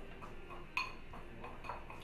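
A spoon clinking lightly against a bowl while mixing diced water chestnuts with red food colouring: a few soft clicks, the clearest about three-quarters of a second in.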